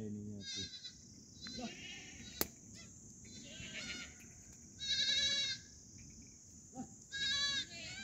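Sheep and goats of a grazing flock bleating at a distance, about six short, high, quavering calls, the longest about five seconds in. A single sharp click comes about two and a half seconds in.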